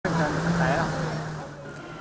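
A steady engine hum with people's voices calling over it, fading away through the two seconds.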